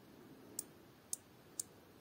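Rotating bezel of a Heimdallr Monster stainless-steel dive watch being turned by hand, giving three faint, sharp clicks about half a second apart as it steps round. The bezel feels like a 120-click bezel.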